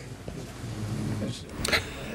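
Faint murmur of voices over steady room noise, with a short noisy burst near the end.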